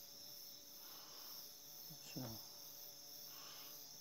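Near silence: a faint, steady high-pitched hiss, with a brief snatch of voice about two seconds in.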